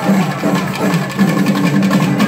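Loud festival percussion music, drums and other percussion playing continuously in a dense, repeating rhythm.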